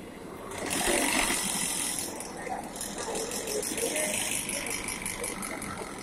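Yarn doubling machine running: a loud hiss comes in about half a second in, then settles into a fast, even ticking.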